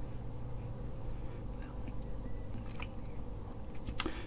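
Faint handling noise: a few small clicks and rustles as crocodile clips are fastened onto an LED backlight's lead wires, over a steady low hum.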